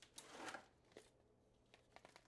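Near silence: room tone, with a faint short rustle about half a second in and a soft click about a second in.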